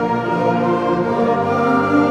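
High school concert band with added strings playing in full ensemble: sustained held chords, moving to a new chord near the end.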